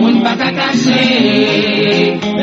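Music: voices singing a slow, chant-like melody on held notes.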